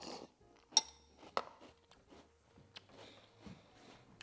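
Metal spoon clinking against a ceramic cereal bowl: a few sharp, separate clinks, the loudest under a second in, with faint chewing of crunchy cereal between them.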